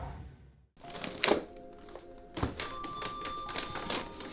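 Intro music fades out at the start. It is followed by two sharp knocks, about a second apart, as small cardboard boxes of parts are handled on a floor, over faint background music.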